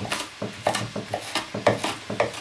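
Chef's knife dicing onion on a wooden cutting board: a quick, even run of knocks of the blade striking the board, about four a second.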